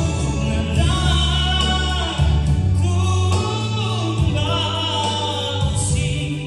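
A male voice singing a gospel praise song through a microphone over a musical accompaniment with long held bass notes that change every second or two.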